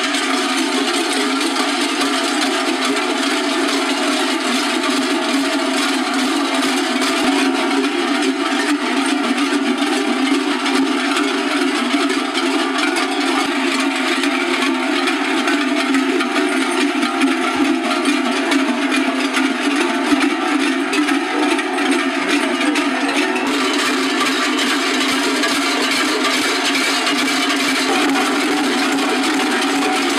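Many large cencerros (cowbells) worn by the costumed dancers clanging together in a dense, continuous jangle as they move.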